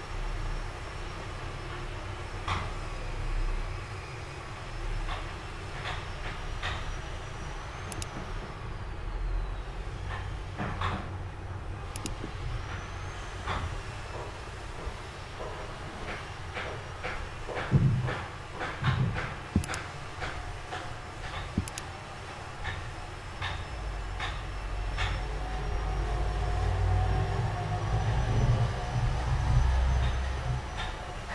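Low steady background rumble that swells toward the end, with scattered sharp clicks of a computer mouse, bunched together in the second half.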